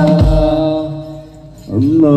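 Live hadroh devotional chanting with drum beats, played loud through a large sound-system speaker stack. A held sung note with a few drum strokes dies away about a second in. Near the end a voice slides up into the next chanted line.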